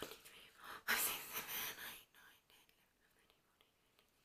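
A woman whispering briefly under her breath for about a second, then near silence.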